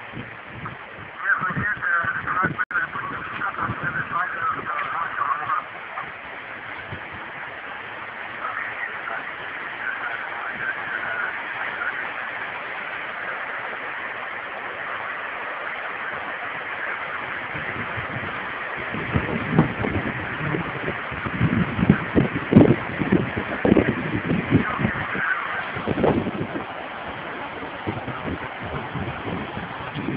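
Indistinct, muffled voices over a steady rushing hiss, with a stretch of rough low rumbling and bumping in the second half.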